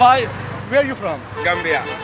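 Men's voices speaking in short phrases, with brief pauses between them.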